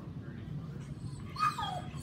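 A collie gives a short, high whine that falls in pitch about one and a half seconds in, as it is brushed with a shedding blade.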